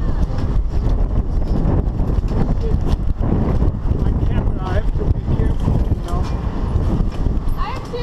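Strong wind buffeting the camera's microphone: a loud, rough low rumble that gusts throughout, with faint muffled voices underneath.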